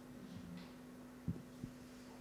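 Faint room tone with a steady low hum, and two short, soft low thumps in quick succession a little past the middle.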